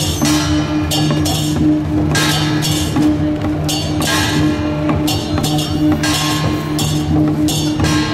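Taiwanese temple procession percussion: a hand-held drum beaten with a stick and metal crashes in an uneven beat, about one and a half a second, over a steady low held tone.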